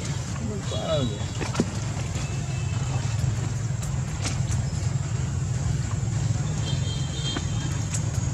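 A steady low rumble like a motor vehicle's engine running, with a faint short voice-like sound about a second in and brief high chirps about a second in and again near the end.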